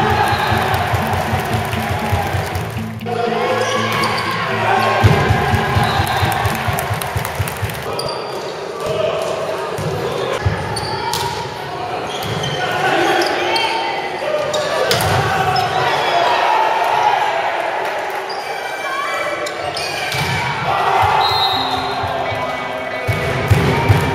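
Volleyball rally in a large hall: sharp smacks of the ball being struck and hitting the floor, among players' shouts and crowd voices, with the hall's echo.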